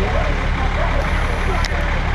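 Fire truck engine running steadily, a constant low rumble, with faint voices in the background.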